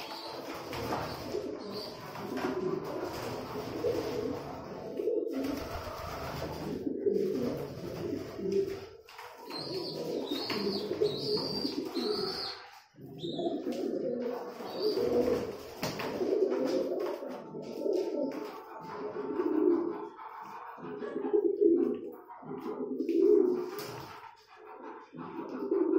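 Domestic pigeons cooing over and over, several birds overlapping in low rolling coos.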